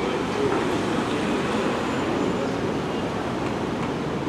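Steady rumble of city street traffic: running vehicle engines and tyres, with no clear single event.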